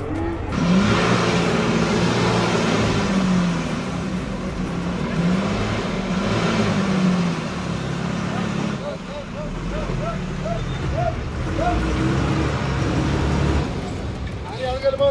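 Diesel bus engine revving hard, its pitch rising and falling, as the bus strains to pull up a slippery dirt hairpin bend, with a loud rush starting about half a second in. It eases a little after about eight seconds, when short rising calls or shouts repeat a few times.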